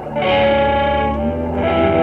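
Background music: held, layered chords, a new chord coming in just after the start and another about one and a half seconds in.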